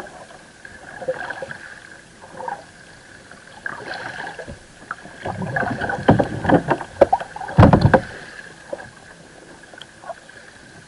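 Water slapping and gurgling against a fishing kayak's hull, under a steady faint high whine. A cluster of louder knocks and thuds comes from about five to eight seconds in, the loudest near the end of that run.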